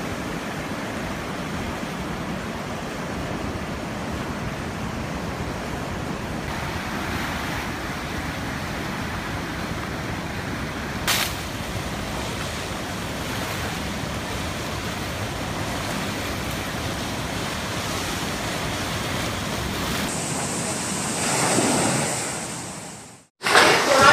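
Steady rushing noise of a heavy rainstorm, with a short knock about eleven seconds in. The noise cuts off abruptly shortly before the end.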